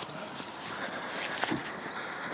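Footsteps on tarmac with rustling from a handheld camera as the person holding it walks, including a couple of sharp taps about a second and a half in.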